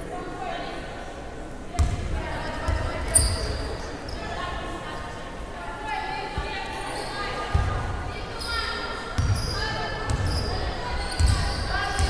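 Basketball being bounced on the court floor, a series of irregularly spaced thumps, with voices in the hall between them.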